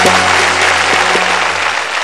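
Applause, with the last held note of the song's accompaniment sounding underneath; both slowly die away.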